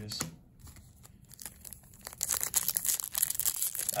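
Foil wrapper of a 2019 Upper Deck Disney trading-card pack crinkling and tearing open. It starts about two seconds in, after a few light clicks of cards being handled.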